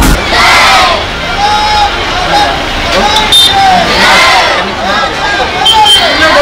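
A crowd of marching students shouting together, with loud group shouts about half a second in and again about four seconds in.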